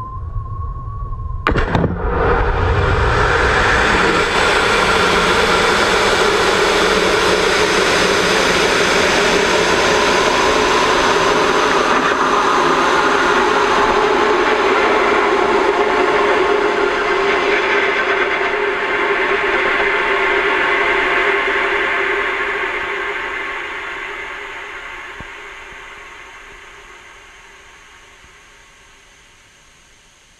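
Sounding-rocket launch heard from a camera mounted on the rocket body. A steady high tone cuts off about a second and a half in, when the motor ignites with a sudden loud rush of noise. The rush holds steady for about twenty seconds, then fades gradually as the rocket climbs.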